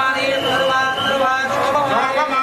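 Melodic devotional chanting: held notes that shift in pitch from one to the next.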